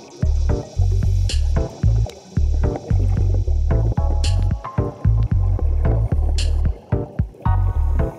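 Background music with a steady, pulsing bass beat and short repeated notes over it.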